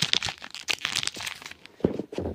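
Crinkling and crackling of a foil trading-card booster pack being handled, a quick run of sharp crackles that thins out toward the end.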